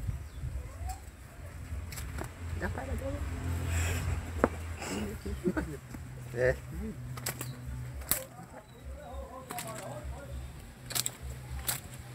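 Coconut-palm leaf rustling and crackling between the fingers as it is rolled into a straw cigarette, with scattered sharp crackles over a low rumble.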